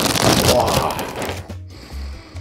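A cereal box and its plastic liner bag being pulled open: loud crinkling and tearing for about a second and a half, then dying down.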